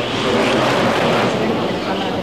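A steady, loud noisy background with indistinct voices mixed in.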